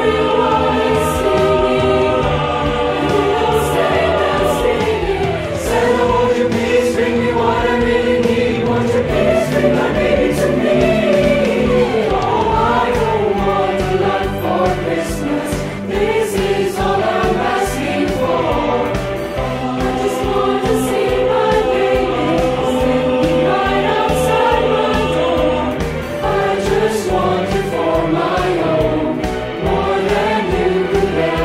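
Mixed choir of male and female voices singing together in harmony, sustained notes with gliding phrases. It is a virtual choir, each voice recorded separately and mixed together.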